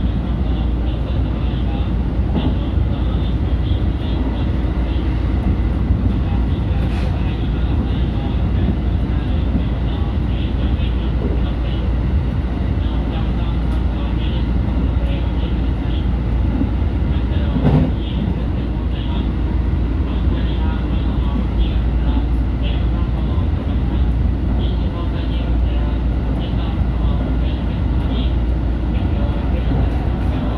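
JR Central 313 series electric train running along the track, heard from the cab: a steady rumble of wheels on rail, with one brief louder clunk about eighteen seconds in.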